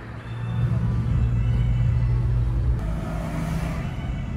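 Steady low engine drone and road noise heard from inside a moving vehicle, with a rushing hiss swelling near the end.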